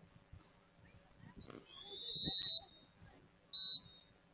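A referee's whistle blown twice: one long, high blast that slides up into pitch, then a short blast near the end.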